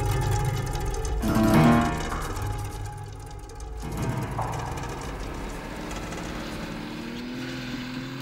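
Acoustic guitar music for about the first four seconds, then a 4x4 vehicle's engine running as it drives past, a steady low hum that rises slightly near the end.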